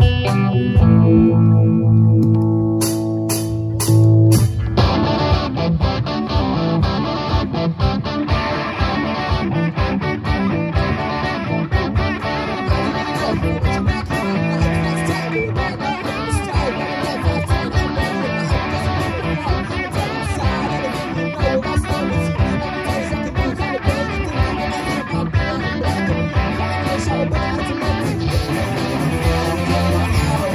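Live rock band of electric guitars and a drum kit playing through amplifiers. Held, ringing guitar chords with a few sharp drum hits open it, then the full band comes in with a steady driving beat about five seconds in.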